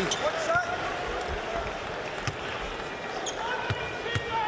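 A basketball bouncing on a hardwood court, a handful of separate knocks, over the steady murmur of an arena crowd.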